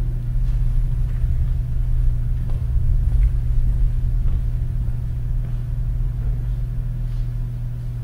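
Steady low hum and rumble on the hall's microphone feed, swelling slightly a few seconds in, with a few faint knocks.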